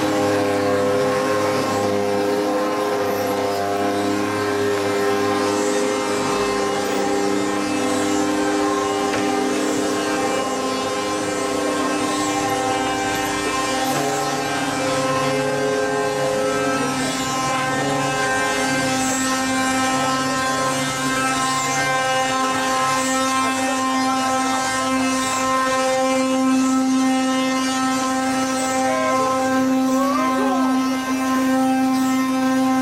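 Wooden ox-cart axles singing: the wooden axles turning in the carts' wooden bearings give a steady, droning squeal of several overlapping tones, some fading in and out as the carts roll on.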